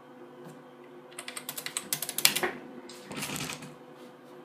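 Fast typing on a computer keyboard: a run of about ten key clicks entering a password, the last strike the loudest, followed by a short softer noise.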